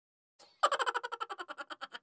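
Cartoon-style sound effect on an animated intro card: a quick, fading rattle of about ten pulses a second, starting sharply just over half a second in and dying away over about a second and a half.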